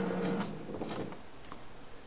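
An all-in-one inkjet printer's mechanism whirring with a steady low hum that fades out after about a second, followed by a few faint clicks. It is a creepy noise, made with no page printing.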